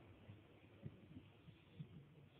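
Near silence: faint low background noise of the recording, with a couple of soft low thumps.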